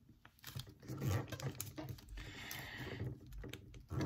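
Square origami paper being folded and creased by hand against a hard tabletop: irregular light taps and paper rustles, with a longer rustle about two to three seconds in.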